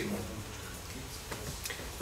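Quiet meeting-room tone with a few faint, scattered clicks, about three in two seconds.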